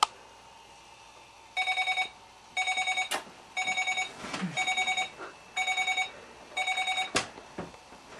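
Digital bedside alarm clock beeping: six bursts about a second apart, each a rapid run of electronic beeps. A sharp click comes near the end, and the beeping stops.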